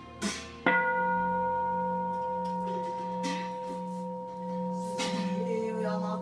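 A large Buddhist bowl bell struck once about half a second in, then ringing on with a deep hum and clear higher overtones that slowly waver as they fade, marking a step in the temple prayer service.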